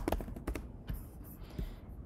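A few light keystrokes on a computer keyboard, typing the last letters of a word.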